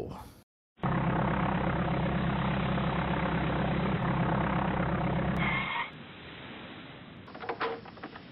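A steady low engine rumble that starts about a second in and cuts off abruptly about six seconds in, leaving quieter background with a brief clatter near the end.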